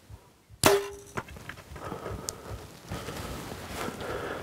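A bow shot about half a second in: a sharp snap of the released string with a short ringing hum, followed about half a second later by a second, quieter smack. Then light scattered scuffs as the pronghorn buck bolts.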